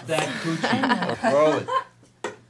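People talking and chuckling, with short laughs mixed into the speech, dying away near the end.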